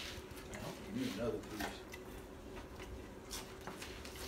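Quiet kitchen room tone with a brief soft murmured voice about a second in and a few light clicks near the end.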